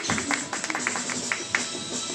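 Audience clapping, a run of sharp irregular claps, over background music playing in the hall.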